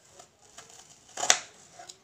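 Small kitchen knife slicing frozen strawberries on a plastic cutting board: a few faint cuts and one sharp knock of the blade against the board about a second and a quarter in.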